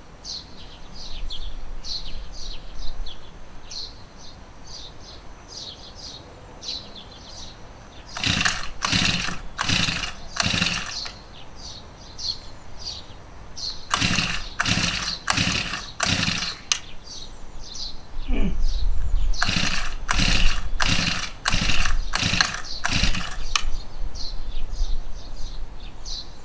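The recoil pull-starter of an engine-powered sprayer being yanked over and over, in three bursts of about five quick strokes each, without the engine catching: it is hard to start. Faint high chirps run on underneath.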